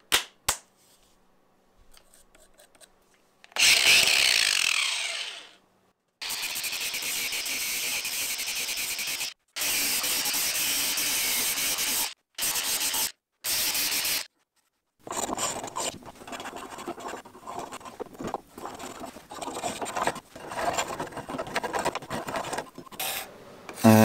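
A cordless power sander with a sanding disc on black locust wood: it runs briefly and winds down with a falling whine, then grinds steadily in several stretches that stop abruptly. In the last third come irregular rough strokes of a hand cabinet scraper on the wood.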